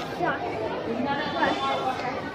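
Indistinct chatter of several overlapping voices.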